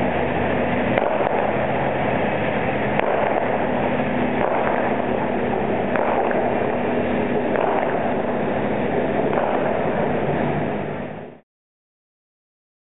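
Elevated Skytrain metro train running at the station platform: a loud, steady rumble with a low hum and a few light clicks, which cuts off suddenly near the end.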